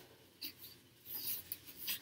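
Faint rustling and rubbing of a large sheet of printed cross-stitch fabric being unfolded, in a few short bursts.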